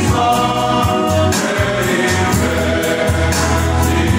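Male choir singing a hymn in harmony, with strummed acoustic guitars.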